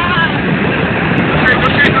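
Truck driving fast on a rough dirt road, heard from inside the cab: steady engine and road noise with wind buffeting the microphone.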